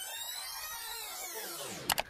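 Tape-rewind sound effect: a dense cluster of pitched tones sweeping up to a peak and falling away, cut off by a click near the end.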